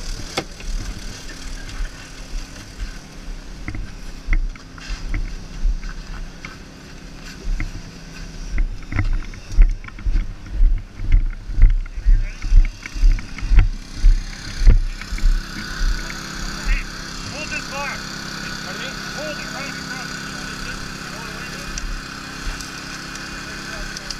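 Engine-driven hydraulic power unit for rescue tools running steadily. Through the middle there is a run of heavy low thumps, about one or two a second, and in the second half a steadier, brighter hum. Faint voices come and go.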